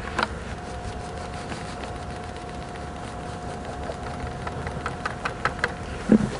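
A steady engine-like mechanical hum with a thin steady tone over it, and a few light clicks near the end.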